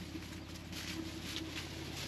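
Jeep Wrangler's engine idling with a steady low hum.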